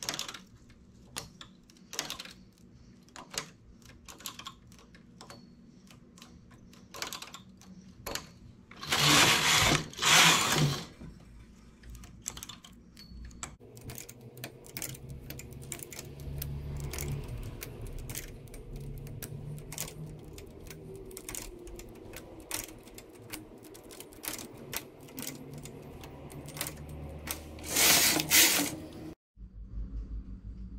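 Domestic knitting machine being worked by hand: small metal clicks of a transfer tool lifting stitches on and off the latch needles. Two long, loud sliding rattles about nine to eleven seconds in and another near the end are typical of the carriage being run across the needle bed to knit the rows between transfers.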